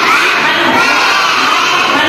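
A class of young children calling out together in chorus, many high voices at once.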